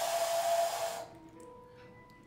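A clay pinch pot whistle blown once for about a second: one steady, breathy whistle tone with a lot of air noise. Soft background music follows.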